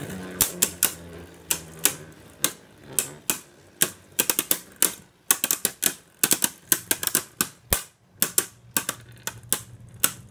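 Two Beyblade Burst tops, Caynox C3 4Flow Bearing and Cognite C3 6Meteor Trans, spinning in a plastic stadium and clacking together again and again in uneven runs of sharp hits. Under the hits runs a low steady whir from the spinning tops, which fades in the first few seconds and returns near the end.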